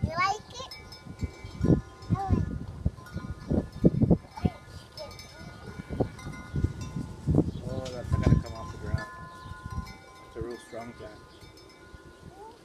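Wind chimes ringing, several clear tones held and overlapping, under repeated low thumps and knocks.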